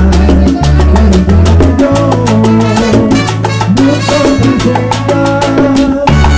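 Salsa band music with bongos struck in a quick, steady pattern.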